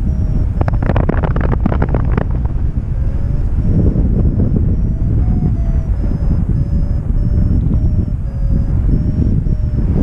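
Airflow buffeting the microphone of a camera on a flying paraglider's harness, a loud steady rush. From about half a second in, a rapid burst of clicks and rattles lasts for about a second and a half.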